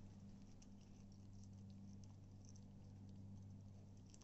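Faint, scattered small clicks and smacks of a corgi puppy gnawing and licking a raw chicken leg, over a steady low hum.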